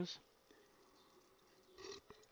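Near silence, with a faint gulp of soda from a glass near the end.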